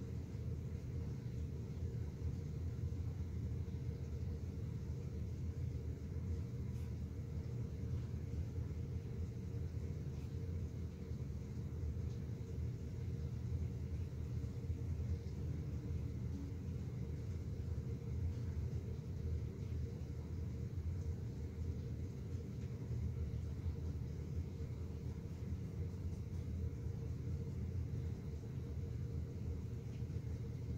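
Steady low background rumble, even throughout, with no distinct sounds standing out.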